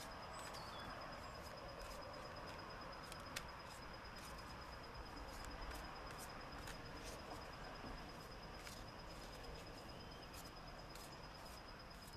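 Soft irregular clicks of a small deck of oracle cards being shuffled by hand, over faint outdoor ambience with a steady high insect trill and a couple of brief bird chirps near the start.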